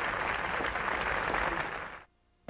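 Audience applause, a steady dense patter that fades out near the end.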